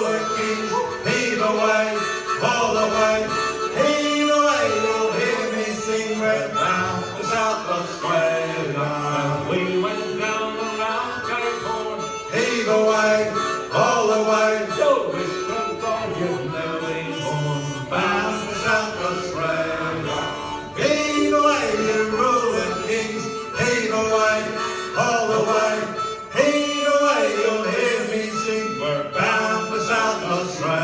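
Folk band playing an instrumental break of a shanty tune: harmonica carrying the melody over strummed acoustic guitars and banjo.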